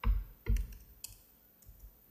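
Clicks and knocks from a laptop being worked at a lectern: two low thumps about half a second apart, then a sharp click about a second in and a couple of faint ticks.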